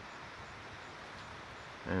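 Corn stalks and leaves rustling in the wind, a soft, steady rustle with no distinct events.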